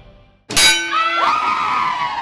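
Fading music drops to a brief silence, then a sudden loud metallic clang with a ringing tail about half a second in. Sweeping tones follow, gliding up and then down in pitch.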